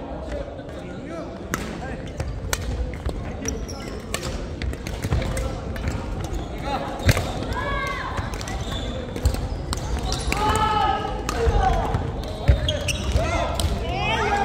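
Badminton rackets striking shuttlecocks in a large gym hall: sharp, echoing cracks every second or two from this and neighbouring courts. Players' voices call out in between.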